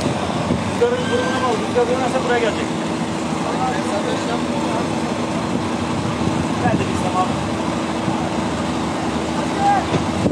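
Water gushing from several tanker trucks' discharge outlets into an earthen pit, over a steady hum of running engines. People's voices call out in the background, mostly in the first few seconds.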